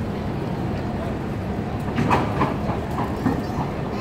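San Francisco cable car rolling on its steel wheels across the turntable rails, a steady low rumble with a cluster of sharper clanks and squeaks about halfway through.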